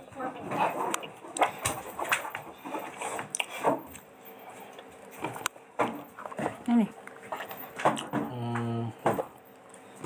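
Indistinct, untranscribed voices in the room, with a short steady held tone about eight seconds in.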